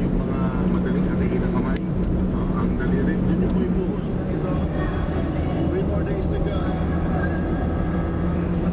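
Steady engine and road noise inside a moving car's cabin, with a constant low hum. Faint talking is heard over it.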